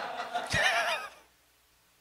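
Brief, soft laughter with a wavering pitch, stopping just over a second in.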